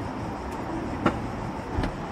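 Steady outdoor traffic background noise with a few light knocks about half a second, one second and near two seconds in.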